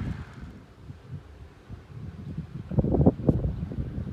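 Wind buffeting the microphone in a low, rumbling wash. It eases off about a second in, then a strong gust hits around three seconds in.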